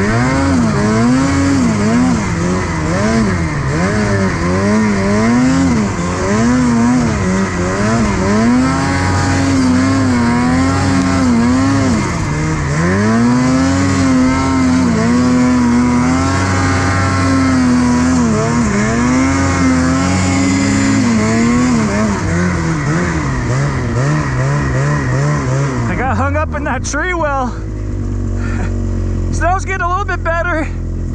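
Ski-Doo Freeride 850 Turbo two-stroke snowmobile engine running under throttle, its note rising and falling over and over as the rider works the throttle. Near the end it settles to a lower, steadier note and then eases off.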